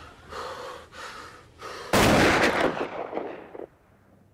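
A gunshot, sudden and very loud about two seconds in, dying away over about a second and a half; a few softer sounds come before it.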